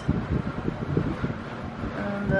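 Strong draft from an overhead air-conditioning vent buffeting the microphone: an uneven low rumble.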